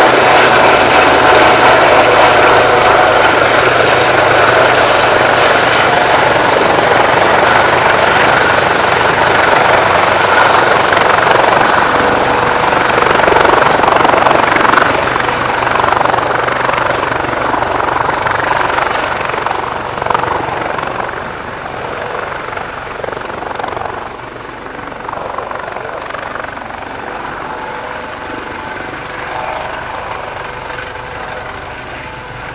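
Helibras HM-1 Panthera twin-turbine military helicopter hovering low, its main rotor, fenestron tail and turbines running loud and steady with a constant whine. From about 16 seconds in the sound fades steadily as the helicopter moves off into the distance.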